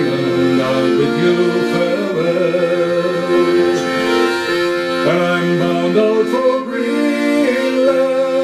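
Piano accordion playing sustained chords and melody, with a man singing a slow folk tune over it.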